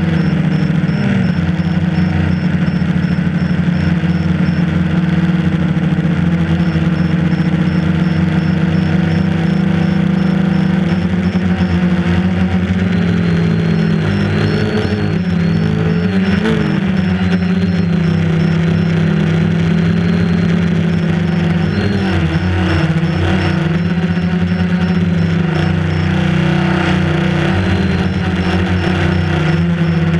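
Quadcopter's electric motors and propellers whining steadily in flight, heard from the onboard camera, the pitch dipping and wobbling with throttle changes in the middle and again later. A faint high pulsing tone comes and goes.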